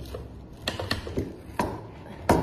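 Handling noise: a few sharp clicks and knocks as a lock part in a plastic bag is handled and set down on a table, the loudest knock about one and a half seconds in.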